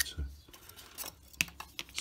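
A few short, sharp clicks and taps of laser-cut plywood kit parts knocking together as the front nose disc is taken off the model's stack of formers. The loudest click comes a little under halfway through.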